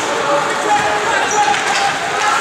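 Ice hockey play in an indoor rink: skates scraping the ice and sticks knocking on the puck, with players and spectators shouting.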